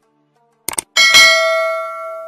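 Sound effects for a subscribe button and notification bell being clicked: a quick double mouse click, then about a second in a bright bell ding that rings on and slowly fades.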